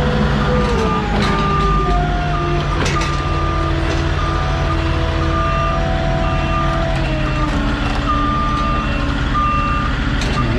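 Diesel engine of a Moffett truck-mounted forklift running under load while its travel alarm beeps steadily, about once a second. A couple of sharp clunks come in the first three seconds.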